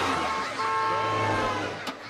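A vehicle rushing past, with voices mixed in; the noise drops away near the end.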